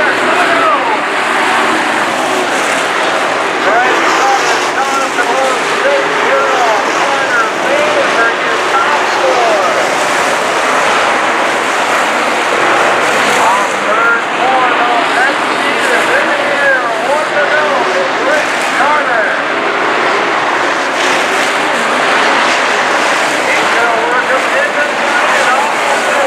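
A field of dirt-track Sport Mod race cars racing, their V8 engines revving up and down in many overlapping rising and falling whines as the cars pass and go through the turns.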